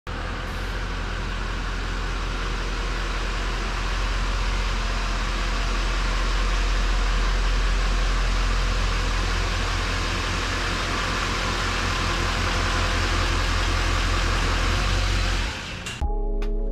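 A Chevy Silverado 2500's Duramax 6.6-litre V8 turbodiesel running as the truck creeps forward at low speed, a steady low diesel drone that grows louder as it comes closer over the first several seconds, then cuts off just before the end.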